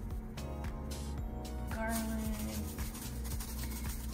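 Background music with a steady low bass and sustained melodic notes.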